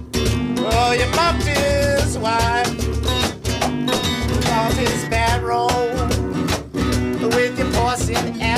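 A singer performing live with a strummed guitar, the voice carrying a melody over steady chords.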